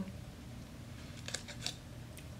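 Faint mouth clicks from chewing a soft, chewy milk caramel: a few short sticky clicks about midway, over a low steady room hum.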